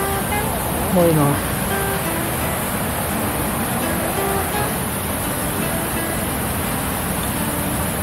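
Steady rushing noise of a small waterfall pouring into its plunge pool, with a brief spoken syllable about a second in.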